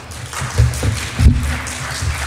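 Papers handled and knocked against a lectern close to its microphone, giving several low thumps, the loudest just over a second in, over a light crackle of applause.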